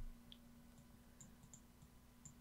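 Near silence: room tone with a low steady hum and a few faint, short clicks of a computer mouse.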